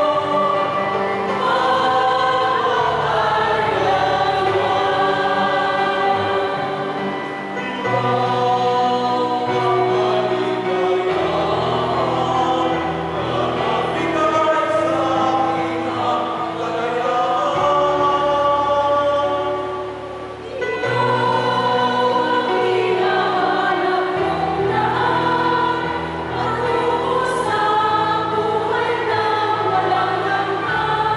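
Mixed choir of women and men singing a serenade hymn to the Virgin Mary. The sung lines move in phrases over held low notes that step every few seconds, with short breaths between phrases twice.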